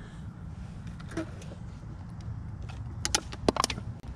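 Electric mobility scooter driving with a low, steady rumble, with a few sharp clicks and knocks near the end.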